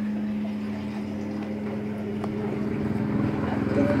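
A motor running with a steady low hum.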